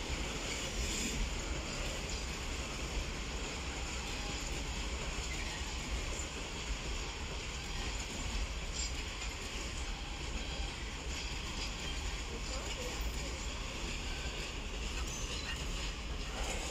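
A freight train of open coal wagons rolling past, with a steady, even rumble of wheels on rail.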